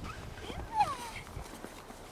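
An 8½-week-old German shepherd puppy whining, a few short high-pitched cries that fall in pitch, loudest just under a second in, as it plays at the handler's hand.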